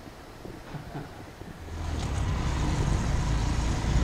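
Motorbike riding along a road, heard from on the bike: the engine's low rumble and wind noise come in about a second and a half in and hold steady.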